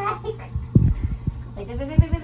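A small wet dog whining during its bath in a tiled tub, in two wavering cries, with low thumps in between.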